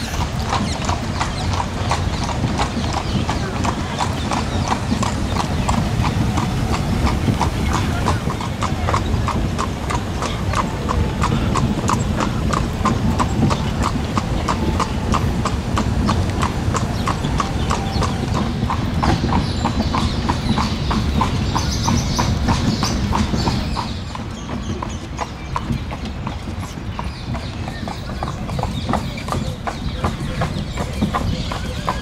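A carriage horse's hooves clip-clopping in a steady rhythm on paved ground as it pulls an open carriage, with a low rumble underneath, a little quieter in the last few seconds.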